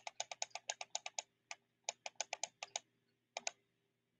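Rapid, uneven light clicking of computer keys, about ten clicks a second, stopping about three seconds in, then two more clicks; a faint steady hum underneath.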